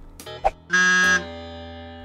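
A single guitar chord struck about two-thirds of a second in, loud for half a second and then ringing out and slowly fading: a short musical sting.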